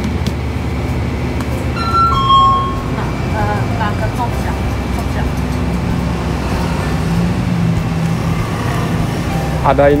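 Convenience-store background noise: a steady low hum with faint voices, and a short two-note tone about two seconds in.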